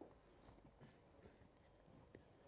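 Near silence: room hiss, with a few faint ticks of a stylus writing on a pen tablet.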